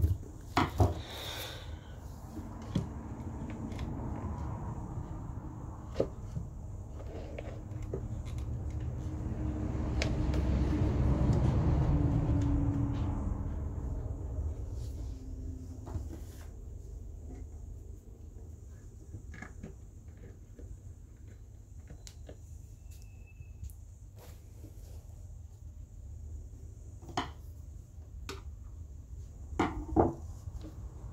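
Handling knocks and clicks of a plastic speaker housing being fitted back into a particleboard subwoofer enclosure. Through the middle, a low rumble swells and fades.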